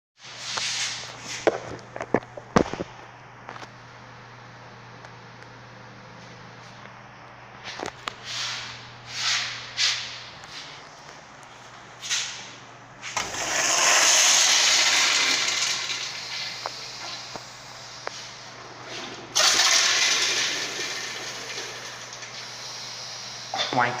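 Eljer Signature commercial toilet with a chrome flushometer valve, flushed twice: a sudden rush of water a little past halfway through, then a second sudden rush about six seconds later, each fading over a few seconds. It is trying to clear a heavy load of toilet paper.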